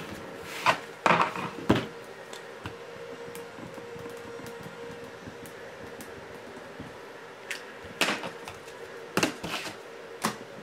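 Quiet room tone with a faint steady hum, broken by a few short knocks and clicks in the first two seconds and again near the end.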